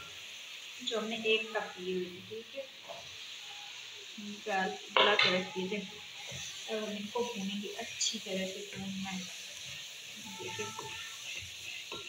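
Tomato-onion masala sizzling in oil in a non-stick kadai as soaked chickpeas are added and stirred in with a wooden spatula. The spatula scrapes against the pan under a steady frying hiss.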